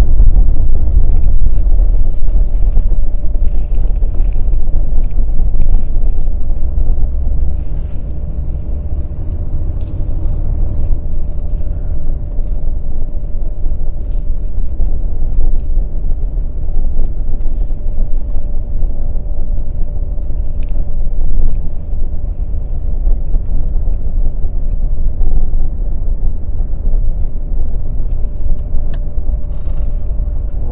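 Car driving at road speed, heard from inside the cabin: a steady low rumble of engine and road noise, a little louder for the first several seconds.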